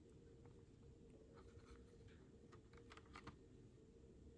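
Near silence with faint scratching and light clicks from a cardboard-backed plastic blister pack as a cat rubs its cheek and teeth against it, mostly through the middle couple of seconds.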